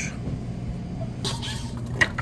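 Lottery ticket vending machine humming steadily, with a short rustling burst a little past a second in as a scratch-off ticket is dispensed into its tray.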